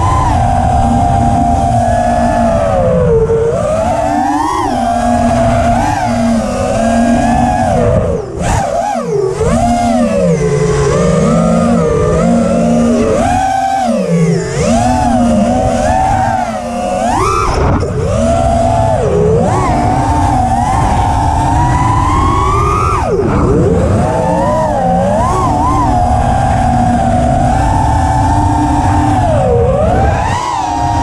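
The brushless motors of an FPV racing quadcopter (KO Demon Seed 2208, 2550KV) whine as it flies. The pitch climbs and falls constantly with throttle, and it drops away sharply a few times when the throttle is chopped, over a rumble of prop wash and wind.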